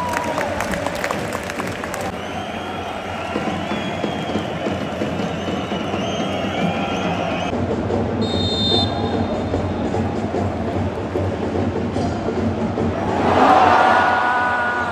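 A large stadium crowd of football supporters chanting and clapping as a penalty kick is about to be taken, the noise swelling louder near the end.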